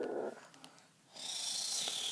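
A low growl made by a person's voice breaks off, and after a short pause a long breathy hiss follows, a mouth-made imitation of the alien creature's hiss.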